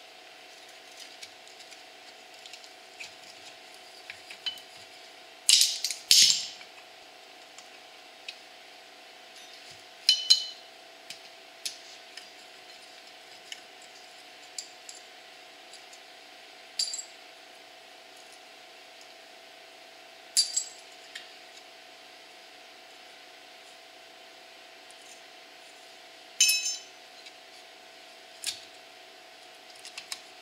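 Metal drum-brake springs and hardware clinking as they are worked loose with vice grips and by hand: sharp, separate clinks every few seconds, the loudest about six and ten seconds in, over a faint steady hum.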